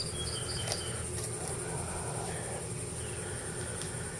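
Steady, high-pitched chorus of insects chirping in the background, with a few faint clicks of handling.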